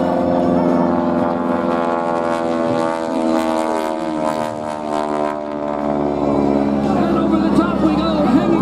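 Biplane's radial engine and propeller droning steadily in flight, the pitch sliding slightly lower around the middle as it passes.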